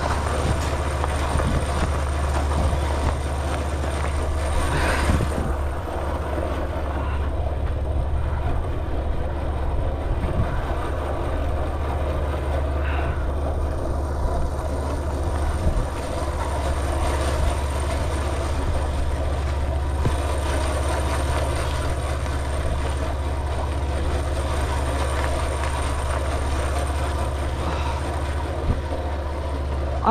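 Trail bike engine running steadily under way, with a continuous low drone and road and wind noise, and a couple of brief knocks from bumps in the track.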